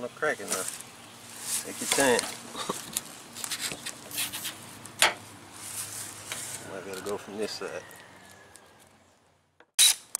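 Plastic scraper rubbing and scraping in short, irregular strokes as it works under an adhesive-backed car emblem on the painted fender, with a sharp click about five seconds in. Brief low voices come and go between the strokes.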